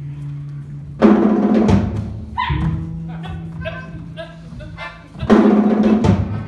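Live ensemble music: a held low bass note runs underneath, two loud crashing hits land about a second in and near the end, and short wind-instrument phrases sound in between.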